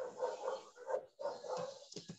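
A dog barking several short times, heard faintly and thinly over a video call.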